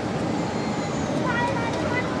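Steady cabin roar inside a Boeing 747-8I in flight, the GEnx engines and airflow heard from a seat over the wing, with faint passenger voices in the background late on.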